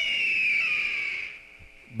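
A short audio transition sound effect between radio segments: a high ringing tone over a hiss, sliding slowly down in pitch and fading out after about a second and a half.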